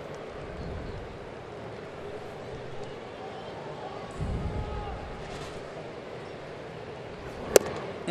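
A baseball fastball popping sharply into the catcher's mitt once, near the end, for a called third strike, over a steady murmur of ballpark crowd.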